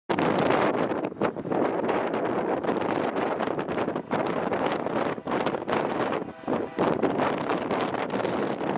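Wind buffeting the microphone: a rushing noise that swells and drops in uneven gusts.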